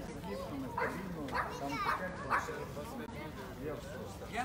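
Faint voices of passers-by in a pedestrian street, including children's voices, with no music playing.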